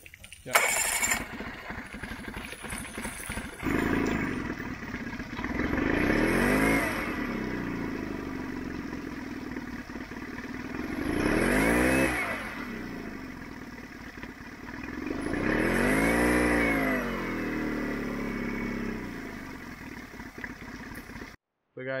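Yamaha F9.9 four-stroke outboard engine, after a few seconds of starting, catching and running, revved up and back down three times. It is freshly fitted with a carburetor cleaned to cure stalling at idle.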